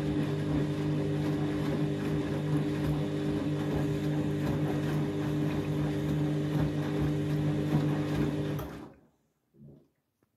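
Candy front-loading washing machine during a rinse: the motor hums steadily as the drum turns, with water sloshing against the door glass. The sound cuts off suddenly near the end, leaving a faint short sound.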